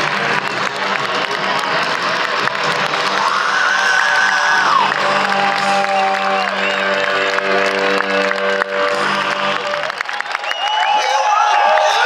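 Large rock-concert crowd cheering, whooping and clapping over live music from the stage, with long held notes in the middle; the cheering picks up near the end.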